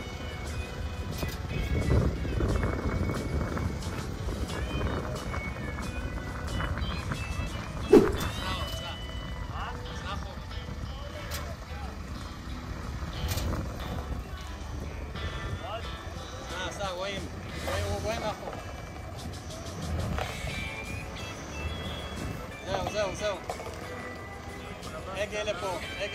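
Indistinct voices and music over a low vehicle engine rumble, with scattered knocks and one sharp, loud knock about eight seconds in.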